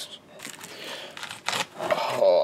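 Hard plastic graded-card slabs clicking and sliding against one another as one is pulled from a packed stack in a foam tray, with a sharper clack about a second and a half in.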